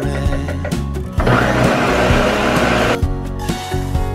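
Countertop blender with a stacked blade starts about a second in, runs for about two seconds and stops, over background music with a beat.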